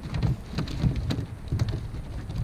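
Live gizzard shad flopping in a pile in the boat, an irregular patter of wet slaps and taps with duller thumps underneath.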